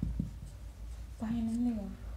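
Felt-tip marker writing on a whiteboard, faint short strokes. Past the middle, a short held voice sound, like a hum.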